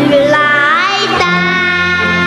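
A child singing a song over instrumental accompaniment. The voice slides up to a higher note about half a second in and holds a long note from just past a second.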